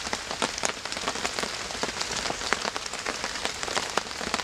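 Steady rain pattering, a dense run of small drop ticks over an even hiss.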